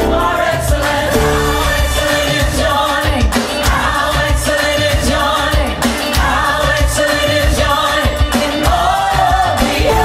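A gospel worship song with lead and choir vocals over a full band with strong bass, played along on a synthesizer keyboard.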